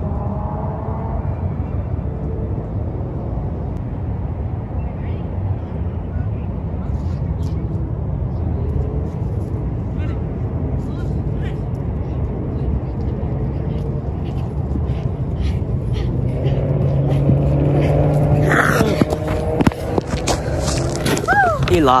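Steady low outdoor rumble with faint distant voices. In the last few seconds the voices get louder and closer, with shouting, as people run back up to the camera.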